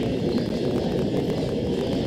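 Steady low rumble of indoor venue room noise, with no ball strikes.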